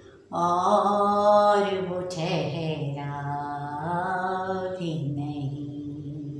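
A woman singing a ghazal in long held notes without words, in two phrases with a short break at about three seconds, then a softer, lower note fading away.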